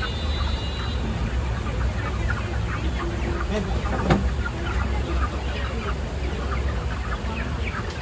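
Many live domestic chickens, hens and roosters crowded together, clucking and calling over one another without a break, over a steady low rumble. One sharp knock comes about four seconds in.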